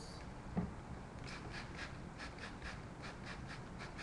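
Hair-cutting shears snipping through a mannequin's hair in a quick run of about a dozen short, crisp cuts, roughly five a second, with a soft knock about half a second in.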